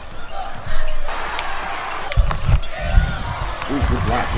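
A basketball dribbled on a hardwood gym court, about four low thuds in the second half, over background voices from the gym crowd.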